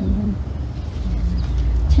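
A woman's short, low hummed 'mmm' as she sniffs a kaffir lime, falling in pitch, followed by a couple of faint murmured hums over a steady low rumble.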